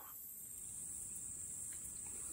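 A steady, high-pitched insect chorus.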